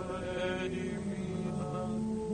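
Early tape music: several sustained, drone-like pitched tones layered together from manipulated tape recordings, held steadily with slow shifts in pitch.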